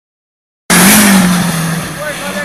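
Hillclimb race car engine running at high revs with a steady engine note. The sound cuts in suddenly about two-thirds of a second in, loudest at first, then eases off slightly.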